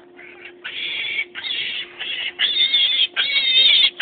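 Black piglet squealing as it is lifted and held, about five high squeals in a row that grow louder.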